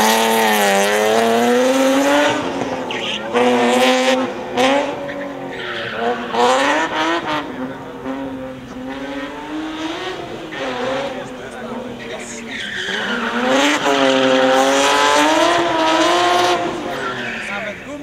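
BMW E36 coupe's engine revving hard, its pitch rising and falling again and again with the throttle and gear changes, with tyres squealing as the car slides round the cones. The engine note drops away near the end as the car comes to a stop.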